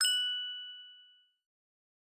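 A single bright, bell-like ding struck once, its ringing tones fading away within about a second: an edited-in transition sound effect.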